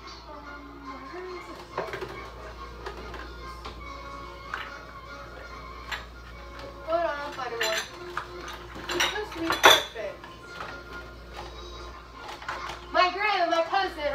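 Dishes and a bowl clattering and clinking as they are handled, with a few sharp knocks, the loudest about two-thirds of the way through.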